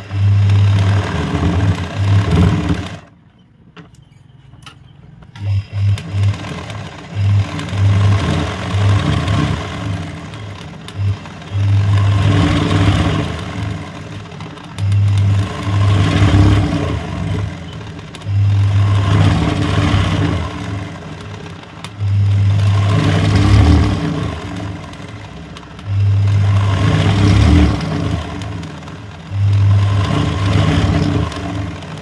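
Sewing machine running in repeated bursts of two to three seconds with short stops between them, stitching free-motion leaf embroidery on fabric in a hand-guided hoop. There is a pause of about two seconds a few seconds in.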